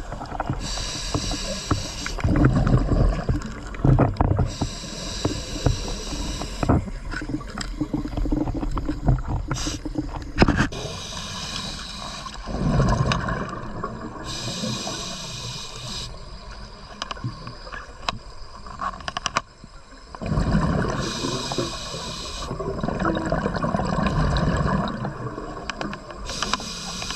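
Scuba diver breathing through a regulator underwater: four breaths, each a hiss on the inhalation with a rumble of exhaled bubbles, with quieter stretches between them.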